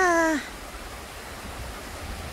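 Shallow stream rushing over rocks: a steady hiss of running water. A woman's short wordless vocal sound, falling in pitch, in the first half-second.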